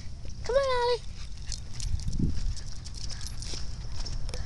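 A short, high, wavering vocal sound lasting about half a second, starting about half a second in, over a low rumble and scattered light taps of steps on pavement.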